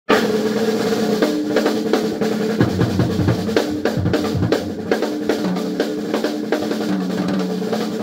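Acoustic drum kit played with sticks in a blues groove: a dense run of snare, bass drum and cymbal strokes, with the drums ringing on beneath them.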